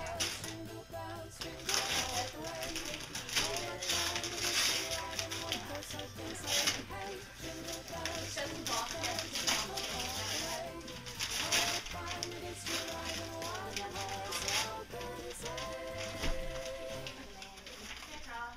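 Gift wrapping paper being ripped off a box in a series of short tearing rasps, over background music.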